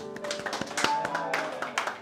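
Hand clapping from a few people, irregular and uneven, over the last sustained chord of an electronic keyboard dying away.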